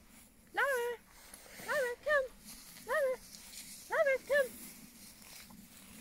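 A woman calling a puppy in a high, sing-song voice to get its attention for a recall. There are six short calls that rise and fall, some in quick pairs, about one a second over the first four seconds or so.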